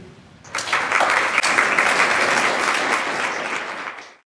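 Audience applauding after the end of a talk, starting about half a second in and cut off abruptly near the end.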